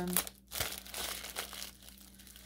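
Clear plastic sleeve around a rolled diamond painting canvas crinkling in irregular bursts as it is handled and slid open.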